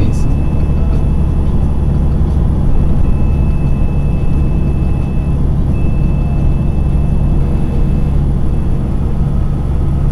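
Steady drone of a Freightliner truck's engine and tyres at highway speed, heard inside the cab, with even low tones and no change in pitch.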